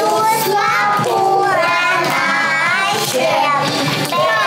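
Young children singing a song together, a continuous melody with wavering pitch.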